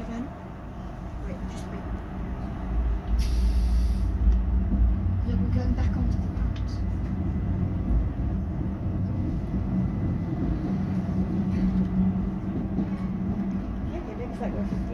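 Electric train running, heard from the driver's cab: a steady low rumble of wheels on track with a motor hum. A short hiss comes about three seconds in, and the rumble grows louder from then on.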